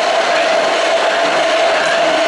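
Hand-held immersion blender running steadily in a tall plastic beaker, blending fruit and juice into a smoothie: a loud, even whir with one steady hum.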